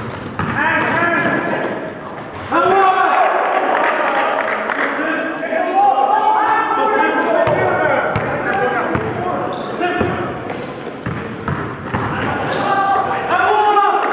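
A basketball bouncing on a hardwood gym floor during play, under continuous loud voices, with several dull bounces close together around the middle.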